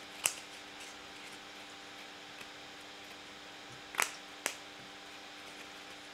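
Scissors snipping through a cardboard egg box cup: one short snip just after the start, then two more about four seconds in, half a second apart, over a faint steady hum.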